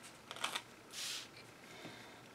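Sheets of paper being handled and laid onto a stack of papers and book pages: a couple of soft taps, then a short swish of paper sliding across paper about a second in.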